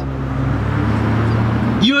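Steady low hum of a nearby vehicle engine with traffic noise. A man's voice comes in near the end.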